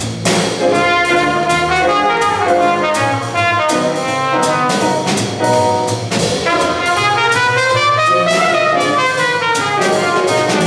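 Live small-group jazz: a trumpet plays a solo line over piano accompaniment and drums with steady cymbal time.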